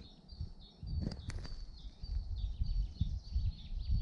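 Small songbirds chirping in a forest, short high notes repeating several times a second. From about a second in, a low rumble and a couple of sharp clicks from the camera or bike sit underneath.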